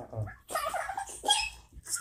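A toddler whining and fussing in several short, high-pitched cries, upset that her bottle of milk is empty.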